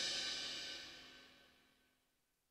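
The ring of the drum kit's cymbals dying away after the final hit, the shimmer fading out within about the first second.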